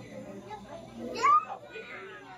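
Children's voices and visitor chatter in a busy indoor hall, with one high voice rising sharply a little over a second in, the loudest moment.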